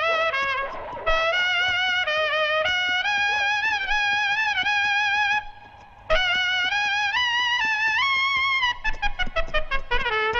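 Solo trumpet playing a slow melody with vibrato on its held notes. It breaks off briefly about five and a half seconds in, then plays a run of quick, short tongued notes near the end.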